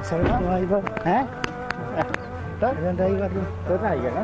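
A man laughs, followed by brief voice sounds over a steady hum, with a few sharp clicks.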